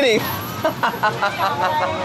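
A man laughing as he finishes the word "raining", then more short bursts of laughter and voices over a steady background hiss.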